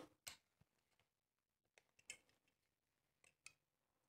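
Near silence with three faint, short clicks: a snap-off utility knife's blade being set against the plastic bed of a model railway track.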